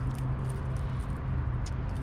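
A steady low hum, with a few faint light clicks.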